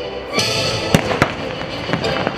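Show fireworks bursting over water: a sudden burst of noise about a third of a second in, then two sharp bangs in quick succession about a second in, with the show's music playing underneath.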